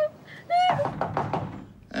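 Knocking on a door: a run of quick knocks lasting about a second, answered by a call to come in.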